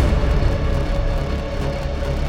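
Trailer score and sound design: a dense, loud low rumble with a steady held tone above it.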